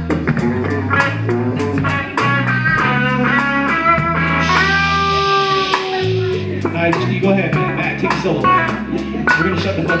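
Live band playing: electric guitar lines over bass guitar and a drum kit, with cymbals struck in a steady beat. Around the middle the guitar holds a sustained chord for about a second and a half.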